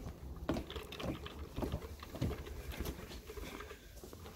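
Footsteps on wooden decking and through a doorway: a string of soft, uneven steps about one every half second, over a low rumble of camera handling.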